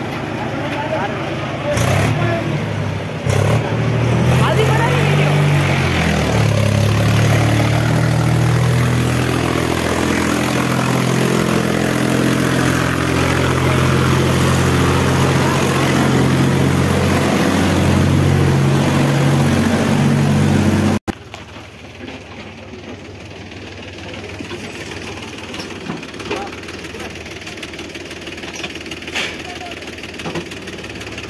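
Mahindra tractor's diesel engine running hard under load as it hauls a sand-laden trolley up a steep lane, its pitch rising and falling with the throttle. About two-thirds of the way through the sound drops away sharply to a quieter engine and background noise.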